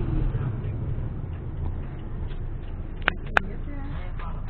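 Inside a moving Suzuki Alto: the steady low rumble of the engine and tyres on the road, with two sharp clicks about three seconds in.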